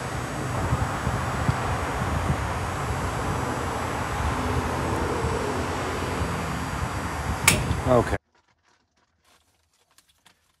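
Gasoline pump dispensing fuel into a truck's tank: a steady rushing noise. A sharp click comes near the end, then the sound cuts off to near silence for the last two seconds.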